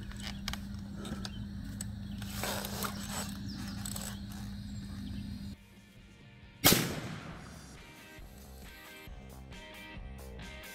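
A single shot from a .357 Magnum lever-action carbine about two-thirds of the way in: a sharp crack with a ringing echo trailing off over the next second or so.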